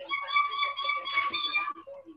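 A high electronic tone held at one pitch with a quick flutter. It starts suddenly, lasts about a second and a half, then cuts off. Faint voices sound under it.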